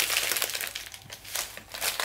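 Brown paper bag crinkling as a flaky chocolate pastry is bitten and eaten out of it, the rustle fading about halfway and followed by a few separate crackles.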